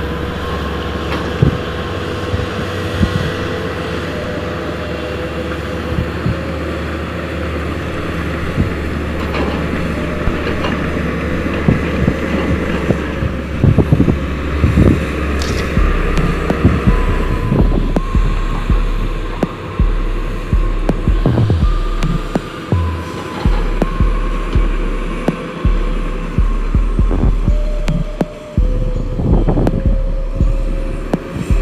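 Diesel engines of mining machinery running steadily, with scattered knocks and clanks. About halfway through, a low, uneven throbbing joins in.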